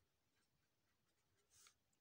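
Near silence, with a faint scratch of a pen writing on notebook paper near the end.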